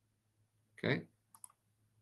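Two quick computer mouse clicks, a tenth of a second apart, about one and a half seconds in.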